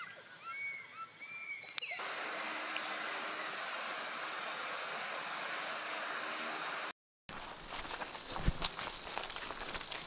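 Rainforest ambience: a few short bird calls for the first two seconds, then a steady high-pitched insect chorus. After a brief cut to silence, footsteps crunch on a leaf-littered dirt trail under the insect chorus.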